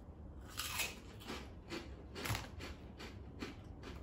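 Close crunching and chewing of a wasabi Doritos chip eaten together with a Korean shrimp cracker: a run of crisp crunches, about three a second.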